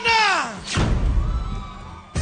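A woman's shriek sliding down in pitch, then about two-thirds of a second in a deep boom that dies away over more than a second.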